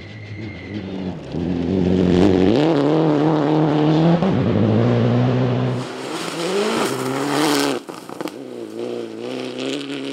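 Citroën DS3 rally car's engine at full throttle on a gravel stage, the revs climbing and then dropping back at each gear change. A loud rush of noise comes as it passes about seven seconds in, after which the engine note is farther off.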